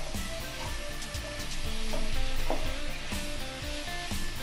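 Mushrooms, garlic and onion sizzling in hot oil in a nonstick wok while being stirred with a spatula, a steady frying hiss.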